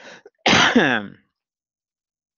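A person clears their throat once, a short rough rasp about half a second in, after a faint breath.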